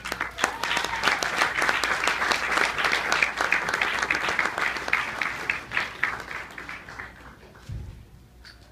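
Audience applauding, dying away over the last couple of seconds.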